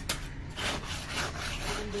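Steel trowel scraping through wet gravel-and-cement mix in a few rough strokes, spreading it over a plastic pipe.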